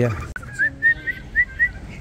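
A small bird calling, a run of six short rising chirps in quick, even succession.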